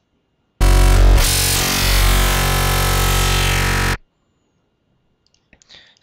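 ZynAddSubFX software synthesizer playing a dubstep growl patch: one loud held bass note of about three and a half seconds, starting just after half a second in. Its tone sweeps in the first second, then it holds until it cuts off suddenly.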